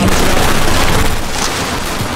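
Several handguns firing at once in a dense, continuous volley of shots.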